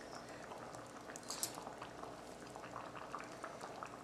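Faint, fine bubbling of a pot of vegetable soup simmering, with a brief soft hiss about a second and a half in.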